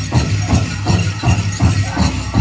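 Powwow drum group playing a steady beat of about three strokes a second for the grand entry song, with voices singing. The metal cones of jingle dresses jingle as the dancers pass.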